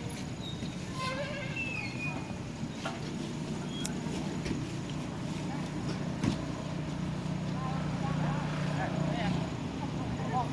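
Background voices over a steady low hum that grows a little louder near the end, with a few short high-pitched arched calls about a second in.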